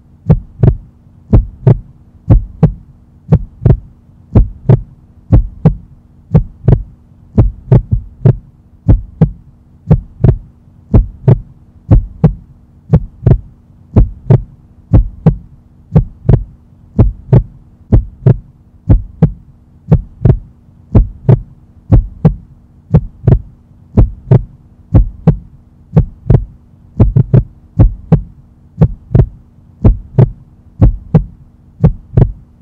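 Heartbeat sound effect: a steady, even rhythm of paired lub-dub beats that runs without a break, with a faint steady hum underneath.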